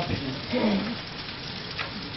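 A brief fragment of a man's voice about half a second in, then a steady hiss of background noise.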